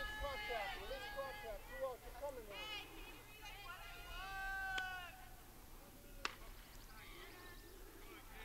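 Distant high-pitched voices of softball players shouting and calling out in drawn-out cries across the field. About six seconds in comes a single sharp pop, the pitch landing in the catcher's mitt.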